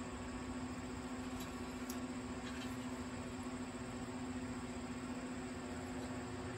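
Wood-pellet grill's fan running in startup mode, a steady hum with one constant low tone, with a couple of faint ticks about one and a half to two seconds in.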